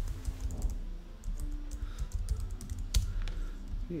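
Typing on a computer keyboard: an irregular run of keystroke clicks, with one louder tap about three seconds in.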